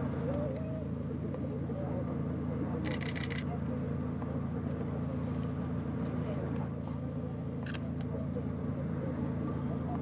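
Steady low rumble of Masaya volcano's lava lake churning and degassing in the crater. A faint high chirp repeats about twice a second, with a brief rattle about three seconds in and a click near eight seconds.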